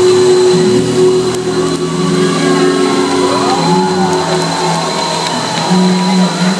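Live pop ballad played loud through a venue PA: a woman's amplified singing voice holding long notes over the backing music, heard from the audience.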